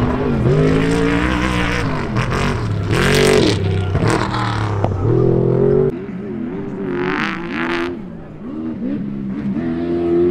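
Off-road race vehicles' engines revving hard as they drive the course, pitch rising and falling again and again with throttle and gear changes. About six seconds in the sound drops suddenly to a quieter engine that keeps revving up and down.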